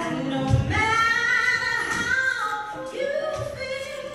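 Gospel song with a woman's voice singing long held notes.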